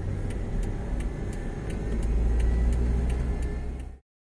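Car traffic rumble heard from a moving car: a steady low drone of engine and tyres on the road that swells a little midway, with faint light ticks about three times a second, cutting off suddenly at the end.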